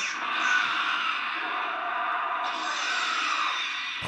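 Anime explosion sound effect from an energy blast: a steady, noisy rush with no voices, easing slightly near the end.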